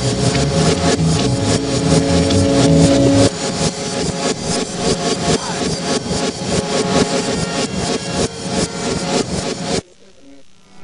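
Loud, dense, distorted jam-session music with a steady fast beat, about four or five strokes a second. Held low notes sound under it for the first three seconds and then drop away. The music cuts off suddenly near the end.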